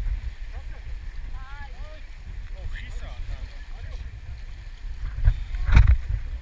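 Swift mountain river water rumbling and sloshing around a camera held at the water's surface, with two loud splashes near the end.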